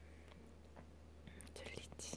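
Near silence over a low steady hum. In the second half come faint breathy, whisper-like sounds and a few soft clicks.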